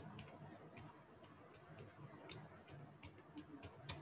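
Faint computer keyboard keystrokes: about a dozen short, unevenly spaced key clicks as a word is typed.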